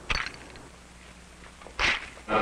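A camera shutter clicking just after the start, with a second short, sharp noise near the end.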